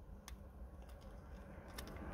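A few faint, light clicks from a metal box mod's battery door and 18650 batteries being handled by hand, spaced irregularly over a low background rumble.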